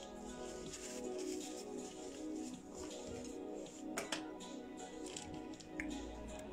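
Background music with sustained steady tones, and a sharp click about four seconds in.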